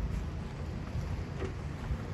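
A low, steady rumble of outdoor background noise, with no distinct event.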